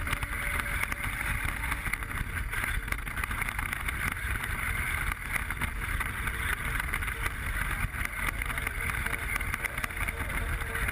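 Traxxas Mini E-Revo VXL RC car driving fast over rough, dry grass, heard from a camera mounted on the car. Its electric drivetrain runs steadily under constant jolts and rattles from the bumpy ground, with wind on the microphone.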